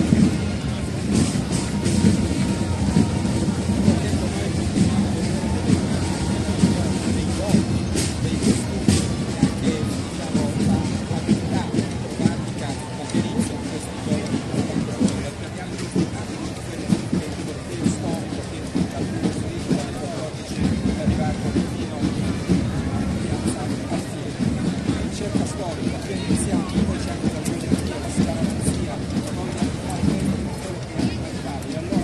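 Side drums of a historical flag-throwers' group playing, amid the chatter of a large crowd.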